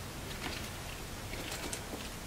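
A few faint light clicks and taps from a heart-and-pom keychain bag charm being hung on a handbag's handle, over quiet room tone.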